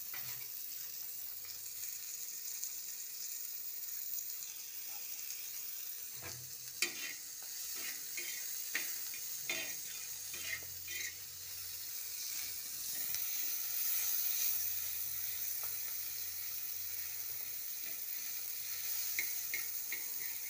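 Silkworm pupae frying with onion and green chilli on a flat pan, a steady sizzle. A spatula scrapes and taps against the pan several times in the middle and again near the end.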